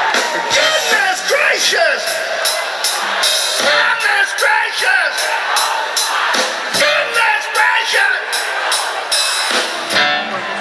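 Live rock band playing with a steady drum beat under a lead vocal.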